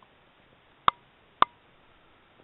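Two sharp clicks about half a second apart over a faint steady hiss.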